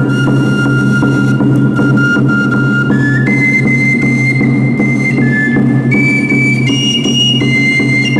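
Andean festival music: a high flute melody of long held notes, stepping higher about three seconds in and back down near the end, over a steady drum beat.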